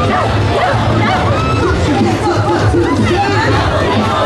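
Parade music from loudspeakers with a steady bass, mixed with a crowd's voices calling out and chattering.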